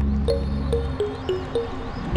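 Background music: a repeating run of short high notes stepping down in pitch over a held low bass, the bass dropping out about halfway through.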